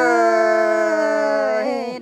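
A singer holds one long, drawn-out note of a Tai (Thái) folk song, dipping slightly in pitch at the start and breaking off near the end, over a steady backing tone.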